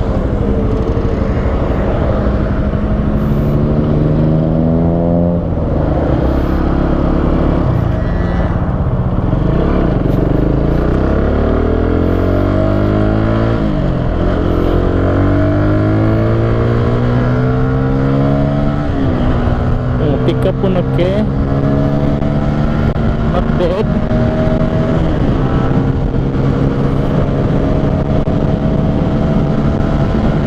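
Benelli 150S single-cylinder four-stroke engine accelerating hard through the gears. Its pitch climbs in each gear and drops at each of several upshifts, over steady wind and road noise.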